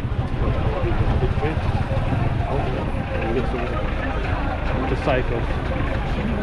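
Busy street-market hubbub: many voices talking at once, none standing out, over a steady low rumble from motorbike and car engines running in slow traffic close by.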